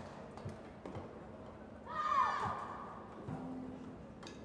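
Badminton doubles play on an indoor court: sharp taps of racket hits and footfalls, with one loud squeal of court shoes skidding on the floor about two seconds in.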